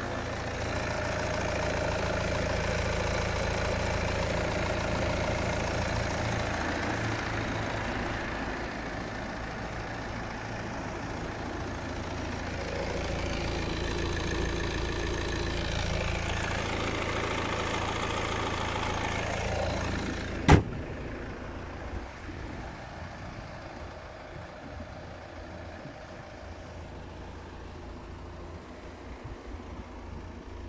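Volvo XC40 D3's four-cylinder diesel idling steadily, heard with the bonnet open. About twenty seconds in a single sharp bang, the bonnet shutting, after which the idle carries on more muffled and quieter.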